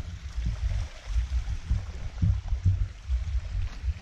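Wind buffeting the microphone: an irregular low rumble that rises and falls in gusts.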